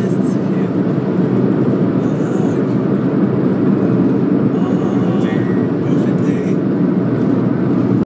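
Steady low rumble of a car driving at road speed, heard from inside the cabin: tyre and engine noise.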